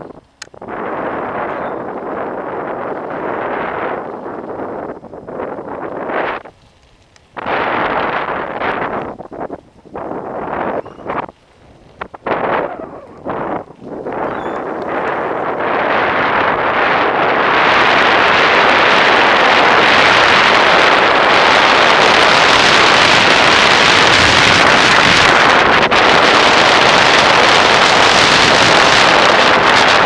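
Strong wind buffeting a helmet-mounted camera's microphone on a mountain-bike descent. It comes and goes in gusts with short lulls at first, then turns loud and unbroken from about halfway on.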